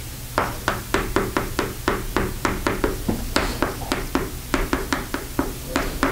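Chalk writing on a chalkboard: a quick, busy run of short taps and scratches, about four strokes a second, as an equation is written out.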